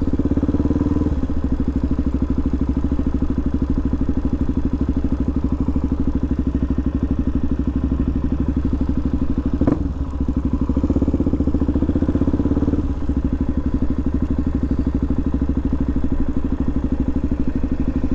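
2016 Suzuki DRZ400SM's single-cylinder four-stroke engine running at low revs while the bike rolls slowly, its firing pulses an even, rapid beat. There is a single brief click about ten seconds in.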